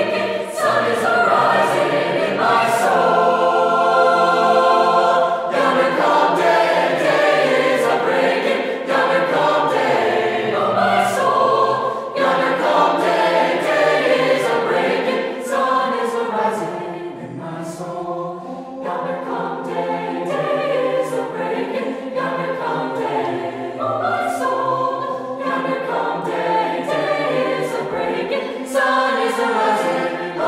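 A high school mixed choir of male and female voices singing in harmony, with held chords and a softer passage about two-thirds of the way through.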